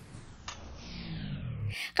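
Spaghetti boiling in a stainless steel pan with a steady bubbling hiss, and one light click of metal tongs about half a second in.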